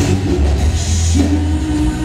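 Live pop-rock band music: acoustic guitar with a drum kit and heavy bass, and a long held note coming in a little past halfway.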